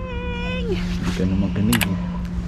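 A woman's long, high, held call, shouted with a hand cupped to her mouth, that drops in pitch and stops less than a second in, followed by laughter and two sharp clicks near the end.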